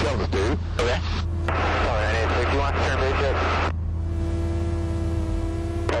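Air traffic control radio chatter heard through the aircraft intercom, with the light aircraft's engine droning low and steady beneath it. About four seconds in the voices give way to a steady radio hiss and hum for the last two seconds.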